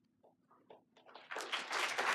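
Audience applause: a few scattered claps about a second in, then quickly building into steady clapping from the whole room.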